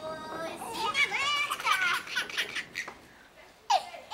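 A baby's high-pitched squeals and giggles, several in the first two and a half seconds, then a quieter pause before one short sound near the end.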